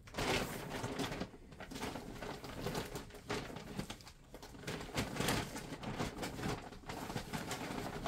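Irregular rustling and handling noises as skeins of yarn are gathered and laid out on a table.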